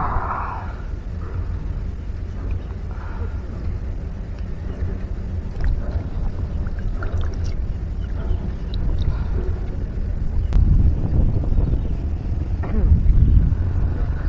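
Wind buffeting the microphone outdoors: a steady low rumble that swells about ten seconds in and again near the end, with one sharp click about ten and a half seconds in.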